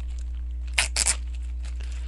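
Plastic shrink-wrap on a trading-card blaster box being torn open: two short tearing crackles, the first a little under a second in and the second just after it, over a steady low hum.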